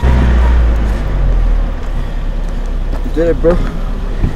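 Wind buffeting the microphone in a snowstorm: a loud low rumble and rush, heaviest in the first second and a half and then easing. A short voice call cuts through about three seconds in.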